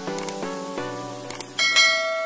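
Outro music of evenly paced synth notes, with short click sound effects and a bright bell-like chime about a second and a half in, from a YouTube subscribe-and-bell animation.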